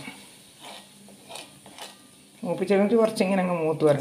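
A metal spoon stirring a simmering masala in a kadai, with a few light clicks of spoon on pan. A voice speaks over the last second and a half.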